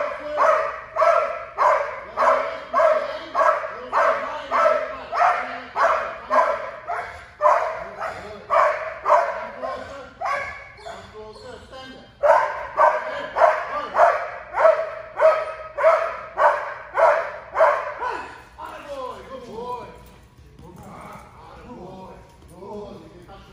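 Belgian Malinois barking repeatedly at a helper in protection training, about two barks a second, with a short lull before a second loud run. Near the end the barking stops and gives way to a few fainter whines.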